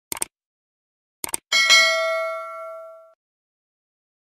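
Sound effects for a subscribe-button animation: two quick clicks, like a mouse clicking, then another pair about a second later. A bright bell ding follows and rings out, fading over about a second and a half.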